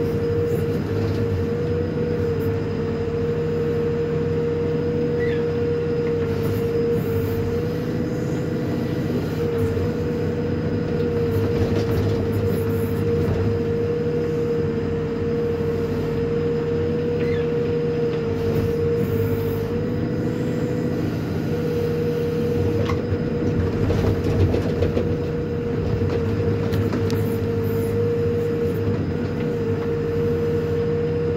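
Hidromek HMK 102S backhoe loader's diesel engine running steadily under load while the rear backhoe digs and dumps soil, heard from inside the cab, with a steady high-pitched whine over the engine.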